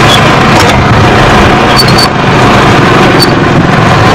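Loud, heavily distorted street noise dominated by vehicle sound, with a few short high-pitched chirps.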